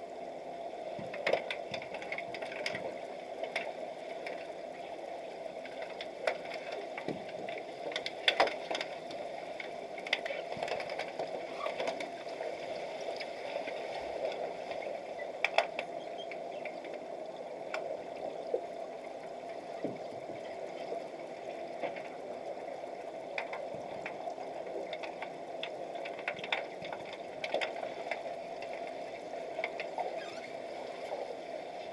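Underwater sound picked up by a camera submerged in a swimming pool: a steady muffled hiss with scattered sharp clicks and knocks, the loudest about 8 and 15 seconds in.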